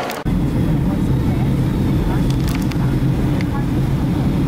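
Steady low drone of a jet airliner cabin in flight, the engine and airflow noise heard from a window seat. It starts abruptly about a quarter second in.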